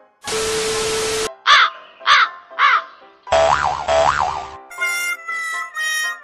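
Video-edit sound effects: a burst of TV static with a steady beep under it, then three short squawks that each rise and fall in pitch, then a second burst of noise with a wavering tone. Light cartoonish music starts about five seconds in.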